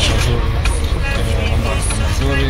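Low, steady engine rumble inside a bus cabin, with voices and background music over it.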